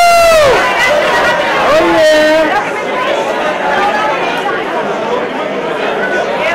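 Crowd chatter on a red-carpet press line, with loud, drawn-out shouted calls, one right at the start and another about two seconds in.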